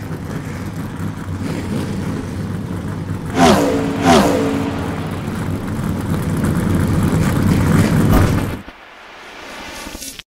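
Race cars at speed: a steady engine drone, with two cars going by about a second and a half apart some three and a half seconds in, the pitch of each dropping as it passes. The sound drops off sharply near the end.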